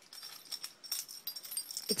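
Faint metallic jingling of a dog's collar tags, a few light clinks with a thin high ring.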